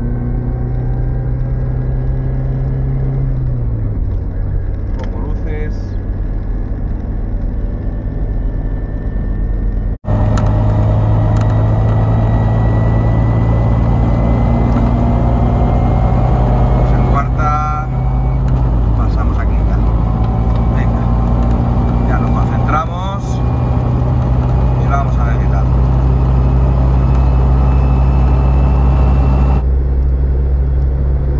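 Lada Niva's four-cylinder engine pulling hard under acceleration up a motorway climb, its note rising slowly and dropping twice at upshifts, about three seconds in and again past halfway, heard from inside the cabin with tyre and wind noise.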